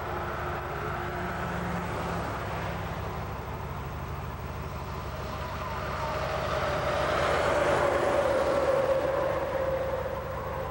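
Highway traffic noise, with one vehicle growing louder and passing about seven to nine seconds in, its tone slowly falling as it goes by.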